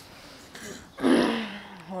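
A woman clearing her throat once, about a second in, followed by a short, steady hum.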